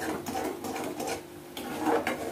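A spoon stirring a thick, wet semolina-and-milk halwa mixture in a stainless steel kadhai, scraping the pan in a run of quick strokes.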